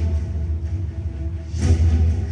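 Dramatic, ominous background score: a steady low rumbling drone under long held notes.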